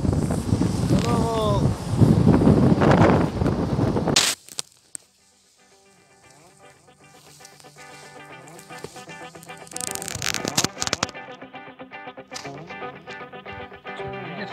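Wind rushing over the microphone from a moving car for about four seconds, with road noise underneath. It cuts off abruptly, and after a moment background music fades in and carries on.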